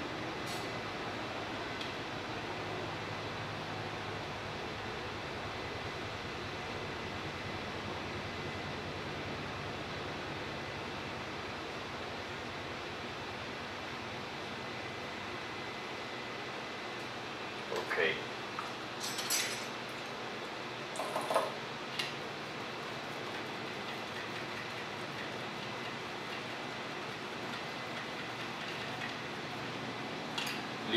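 Steady background hiss of the repair bench with a faint high steady tone that stops a little past the middle, then a few brief small handling clicks and scrapes close together, likely from tools or test probes on the board.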